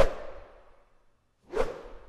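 Two whoosh sound effects in an animated outro, about a second and a half apart, each a short swish that quickly dies away. The second comes as the title card collapses to a line.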